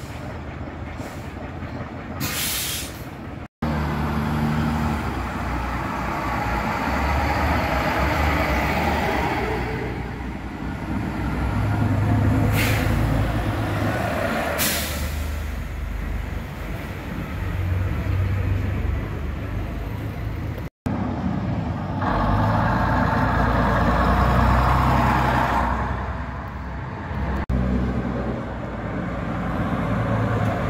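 Vintage diesel buses running and pulling away, the engine note rising and falling with load, broken by several short sharp hisses of air brakes being released.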